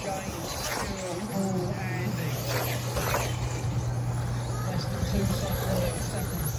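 Electric motors of 4WD RC off-road buggies whining as the cars race past, several short whines falling in pitch as they go by. A steady low hum sets in about a second and a half in.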